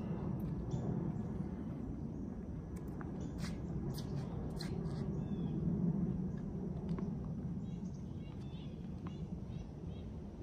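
Outdoor ambience: a steady low rumble with scattered faint short ticks in the first half and a few faint chirps.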